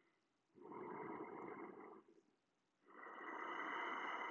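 A person's deep ujjayi breathing, each breath a soft, even hiss through the throat: one breath about half a second in lasting just over a second, then a longer one starting about three seconds in.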